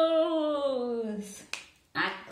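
A woman's voice drawing out one long vowel that slides slowly down in pitch, followed by a single sharp click about a second and a half in.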